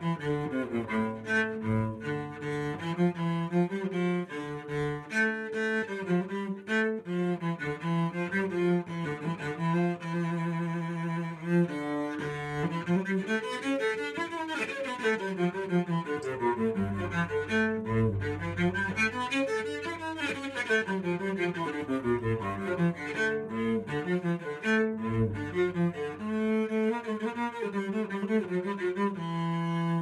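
Cello played with a bow by a first-year learner: a tune of separate held notes, with quick runs up and down the scale in the middle, intonation still rough in places.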